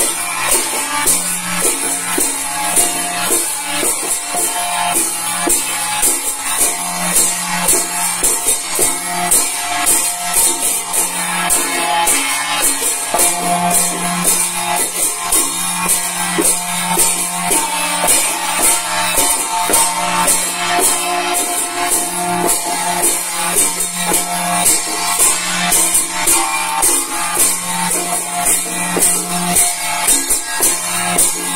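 Vietnamese ritual chầu dance music: small handheld drums and hand cymbals beating a fast, even rhythm, with a bright metallic shimmer on top and a steady low tone underneath.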